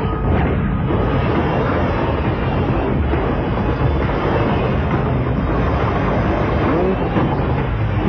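Cartoon action sound effects: a dense, steady, rumbling roar mixed with the dramatic background score.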